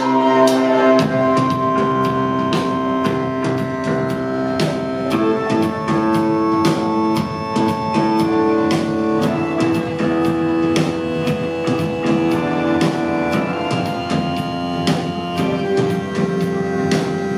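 Live rock band playing the instrumental opening of a song, with held electric-guitar notes over a steady drum beat at about two hits a second.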